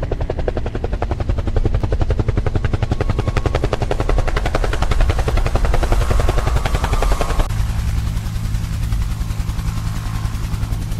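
Helicopter rotor chop, a rapid even beat from the blades, growing louder toward the middle and cutting off abruptly about seven and a half seconds in. After the cut a steady low engine drone remains.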